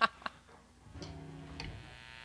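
A single light click, then from about a second in a quiet held note from an amplified instrument rings steadily, with a faint tick partway through.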